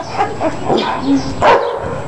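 A dog barking: several short barks, the loudest about one and a half seconds in.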